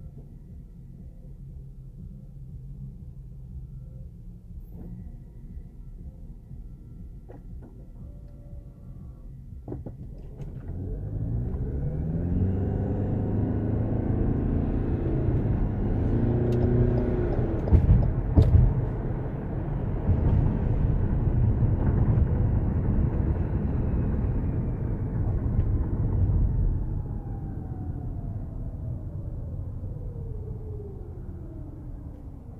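Car heard from inside the cabin: a low rumble while stopped, then the engine note rising as it pulls away and accelerates, with tyre and road noise swelling to a steady cruise. Two sharp bumps a little past halfway, and the sound eases with a falling note as the car slows near the end.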